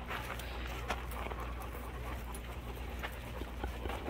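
Dogs panting close by, with scattered light scuffs and clicks from paws moving on gravel.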